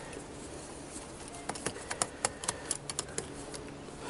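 Light metallic clicks and taps from a screwdriver working the small float-bowl screws on a Kawasaki ZX-6R carburettor bank: about a dozen irregular clicks starting about a second and a half in.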